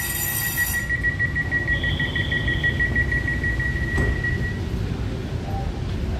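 Low running rumble of a Taiwan Railway EMU900 electric multiple unit pulling out of a station, heard from inside the carriage. Over it a steady high-pitched ringing tone stops about four and a half seconds in, and there is a single click about four seconds in.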